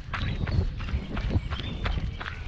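Quick, even footsteps on a leaf-strewn dirt forest trail, about three steps a second, over a low rumble on the microphone.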